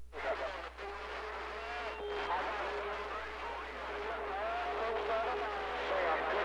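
CB radio receiver playing a weak incoming transmission: a faint, unintelligible man's voice buried in static hiss, with a steady whistle-like tone running under it for most of the time.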